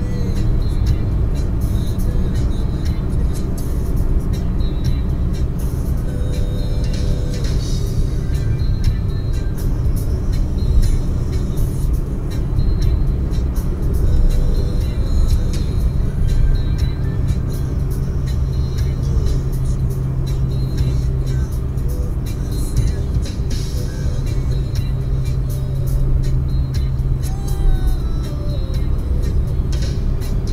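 Steady road and engine rumble inside a car cruising at highway speed, about 115–120 km/h, with music playing over it.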